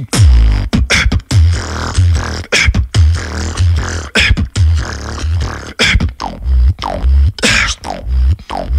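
Human beatboxing into a close studio microphone: deep kick-drum and bass sounds under sharp snare-like hits that land roughly every second and a half, with short falling tonal sweeps in the later seconds.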